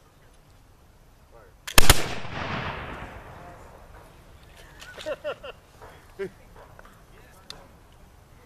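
Two black-powder flintlock muskets fired almost together about two seconds in: a small crack, then two loud reports a tenth of a second apart, the report fading away over about a second and a half. Brief voices follow a few seconds later.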